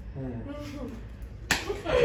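A sudden loud slap of a flour tortilla striking a face about one and a half seconds in, followed by noisy spluttering and laughter.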